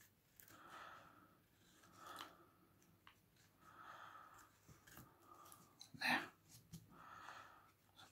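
Carving knife shaving the edges of a wooden spoon: a series of faint, short scraping cuts about a second apart, the loudest about six seconds in.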